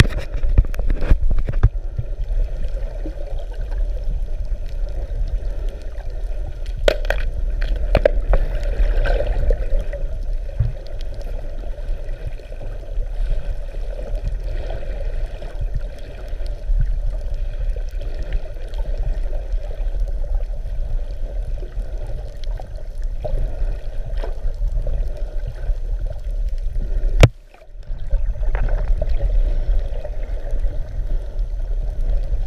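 Muffled underwater rumble and water noise picked up by an action camera inside its waterproof housing, with scattered sharp clicks or knocks. A louder knock comes near the end, followed by a brief dip in level.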